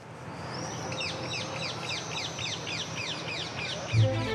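A bird calling: a rapid run of short, high, falling chirps, about five a second, over steady low background noise.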